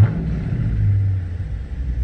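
Dodge Charger R/T's 5.7-litre HEMI V8 idling in park, heard from inside the cabin as a steady low rumble. The engine sound swells briefly just after the start, then settles back to idle.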